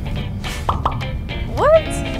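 Background music with editing sound effects over it: two quick falling plops a little before the middle, then a louder springy 'boing' that swoops up and back down near the end.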